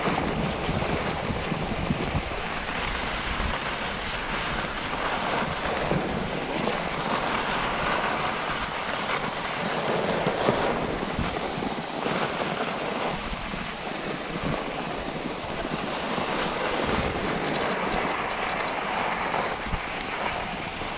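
Steady rush of wind over the microphone from skiing fast, with the hiss of skis gliding over groomed snow, swelling and easing a little from moment to moment.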